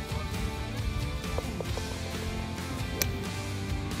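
Background music with steady held notes, and a single sharp click about three seconds in.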